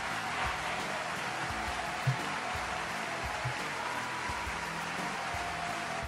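Soft, steady background music from a rugby explainer video.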